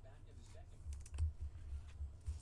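Hands handling trading cards and a clear plastic card sleeve on a table, making light clicks and taps with dull low bumps.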